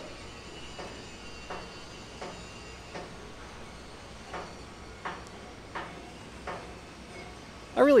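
Faint construction-site ambience: a steady background hiss with soft, evenly spaced knocks like distant hammering on metal, about one every three-quarters of a second.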